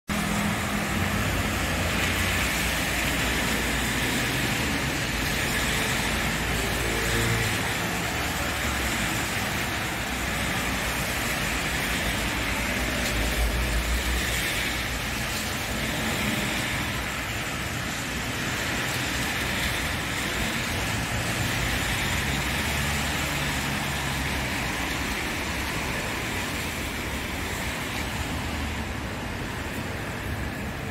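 Road traffic on a wet city street: a steady hiss of tyres, with the low rumble of passing cars swelling and fading several times.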